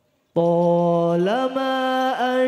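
A male solo voice singing sholawat into a microphone. After silence it comes in about a third of a second in on one long held note, slides up in pitch about a second later and holds the higher note.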